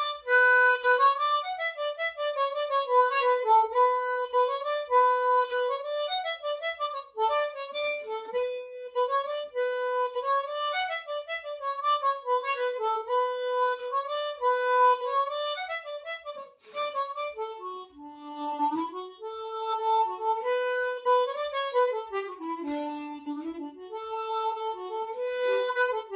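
Solo harmonica playing a traditional tune as a single melody line of quick, lively notes, dipping into lower notes twice in the last third.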